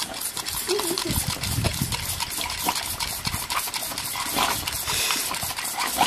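A boxer dog biting at a jet of water from a garden hose: a rapid run of wet snaps and splashes against a hissing spray, with a short wavering vocal sound about a second in.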